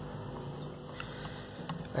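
Quiet room tone with a couple of faint light clicks, as a small plastic aquarium filter and its fitted plastic cap are handled.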